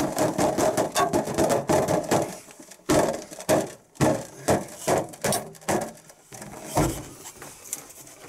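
A ruler repeatedly smacking inflated latex balloons: a quick run of sharp slaps for the first couple of seconds, then scattered hits.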